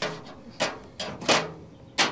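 A long-handled grill brush scrubbed back and forth across a metal grill grate, a series of rasping scrapes about one every two-thirds of a second, each fading quickly.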